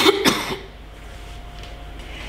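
A person coughing: two quick bursts in the first half second, then quiet room tone.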